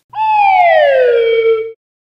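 A single high, whistle-like tone that glides steadily down in pitch for about a second and a half, then cuts off suddenly.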